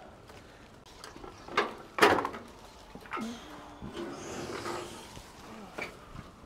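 Leafy tree branches rustling as they are handled, with sharp knocks about one and a half and two seconds in, the second the loudest, and a smaller click near the end.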